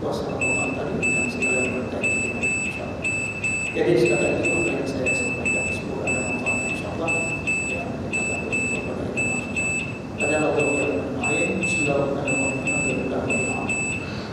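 Electronic beeping: a single high-pitched beep repeating several times a second in short groups, starting about half a second in and stopping just before the end, over a man's voice speaking.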